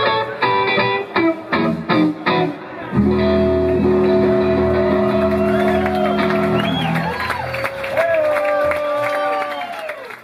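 Live electric blues guitar playing short, clipped picked notes, then the band hits a long sustained closing chord about three seconds in, with bent guitar notes wavering over it as it rings out and fades near the end.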